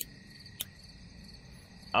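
Faint steady chirping of crickets in the background, with a single short, sharp click about half a second in.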